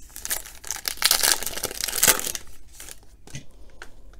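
Shiny foil trading-card pack wrapper being opened by hand, crinkling and tearing, loudest about one to two seconds in, then a few light clicks as the cards are handled.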